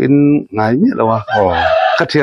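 A rooster crowing once, briefly, in the second half, after a man's speech in the first second.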